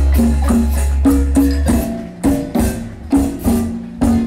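Live marimba ensemble playing a danzón: marimba with electric bass and percussion keeping a steady beat.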